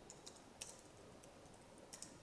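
Faint computer keyboard typing: a few scattered keystrokes.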